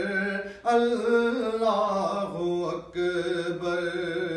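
A man's solo voice reciting a naat in Urdu, unaccompanied, singing long held notes that waver and ornament in pitch, with short breaths about half a second in and near three seconds.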